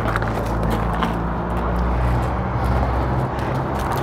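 An engine idling steadily, a low continuous hum with outdoor background noise.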